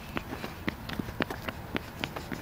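Quick footsteps on a concrete sidewalk, short knocks at about four steps a second.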